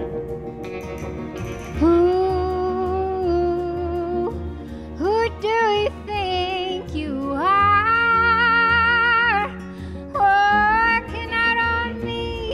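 A woman singing a slow song over instrumental backing, her voice entering about two seconds in and holding long notes with vibrato.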